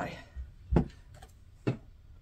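Two short, soft knocks about a second apart as a household iron is handled and set down on a wool pressing mat.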